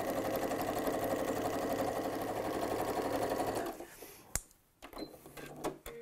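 Janome computerised sewing machine running steadily as it sews a straight-stitch seam, then stopping suddenly about three and a half seconds in, followed by a few sharp clicks.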